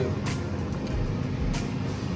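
Background music with a deep bass and a few sharp percussive hits.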